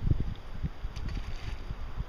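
Wind buffeting the microphone in uneven low rumbles, over the steady rush of a flowing river.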